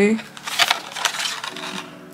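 Handling of a hard plastic half-face mask held against the face: a few light, sharp clicks and rustles, mostly in the first second.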